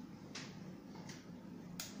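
Three faint, light taps about three-quarters of a second apart, made by a hand on a tablet.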